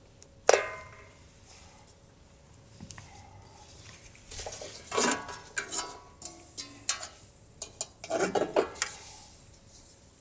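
Handling clatter of a rigid black sheet cut-out on its wall pivot pin: one sharp clank with a short ring about half a second in, then a string of clicks and rattles as the shape is lifted off and rehung from another corner.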